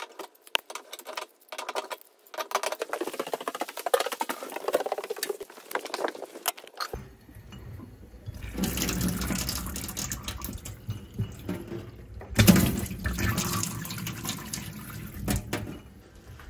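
Kitchen mixer tap turned on, water running from it into a stainless steel sink, coming on about seven seconds in and running harder from about twelve seconds. Before that come scattered clicks and knocks of tools and fittings being handled.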